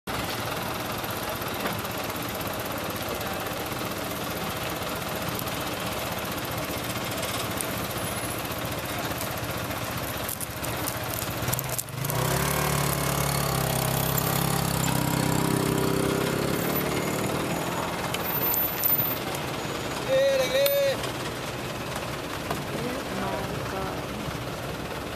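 Bus engine running, growing louder about halfway through as its note climbs under load as the bus pulls forward onto the ferry ramp.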